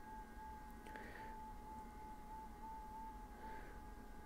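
A faint FT8 digital-mode signal: one steady tone just below 1 kHz that steps slightly up and down in pitch, over a low hiss.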